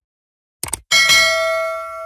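Notification-bell sound effect of a subscribe animation: a short click, then, about a second in, a single bell chime that rings with several clear tones and fades away.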